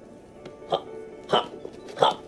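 Three short hiccup-like vocal sounds, a little over half a second apart, over faint background music.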